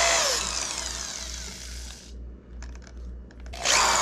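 A DeWalt corded drill with a hole saw drilling out the closed end of a twist-throttle grip: it runs and winds down over the first two seconds, then a quieter gap with a few light clicks, and the drill starts up and cuts again near the end.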